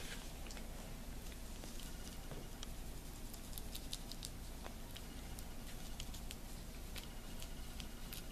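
Gloved hand pressing and patting thick, putty-like plaster onto a silicone mold, heard as faint soft pats and small sticky clicks over a low, steady room hum.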